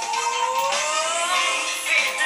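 Female vocal pop ballad over backing music, with one long held note gliding upward in pitch over the first second and a half.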